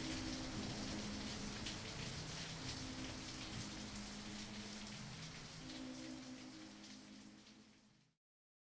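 Steady rain falling, with low held tones underneath, the whole bed fading out gradually to silence near the end.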